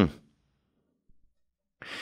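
A short spoken "mm-hmm", then near silence, then a quick breath drawn in near the end just before speech starts again.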